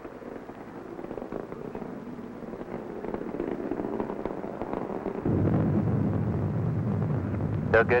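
Saturn IB rocket engine noise, a crackling rumble that becomes suddenly louder and deeper about five seconds in.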